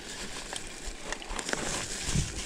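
Mountain bike rolling down a rough dirt singletrack: tyre noise on the ground with scattered clicks and rattles from the bike.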